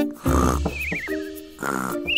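Cartoon snoring sound effect, heard twice: each time a snore followed by a wobbling whistle that falls in pitch. Light children's background music plays under it.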